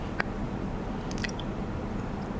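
Steady low hum of room tone between sentences, with a small mouth click about a quarter second in and a few faint ticks a little after a second.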